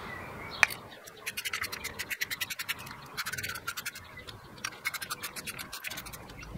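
Ratcheting screwdriver handle with a 10 mm socket clicking fast and evenly as a large screw is undone, in two runs with a short pause between.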